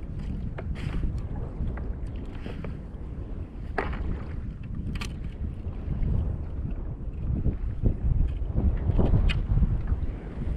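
Wind buffeting the microphone over water sloshing against a kayak's hull, a steady low rumble that grows louder near the end. A few sharp clicks from the fishing gear stand out.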